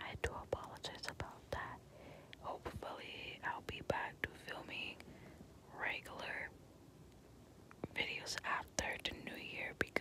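A woman whispering in short phrases, with small clicks between them.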